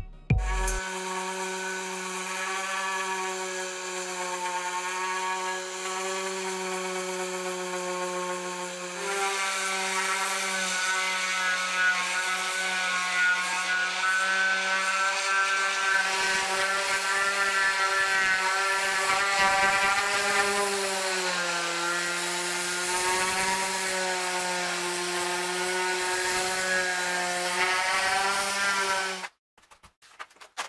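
Random orbital sander running on the plywood boat hull, a steady motor whine whose pitch wavers and dips slightly as the pad is pressed and moved. It cuts off suddenly near the end.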